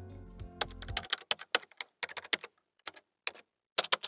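Computer keyboard typing sound effect: an irregular run of quick key clicks, as if text is being typed into a search bar. The last notes of background music die away about a second in.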